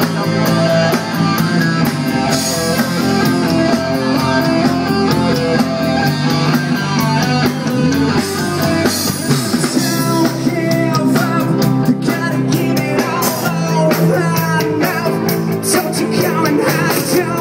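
Live rock band playing loudly: guitars through amplifiers over a steady drum-kit beat, with a man singing into the microphone.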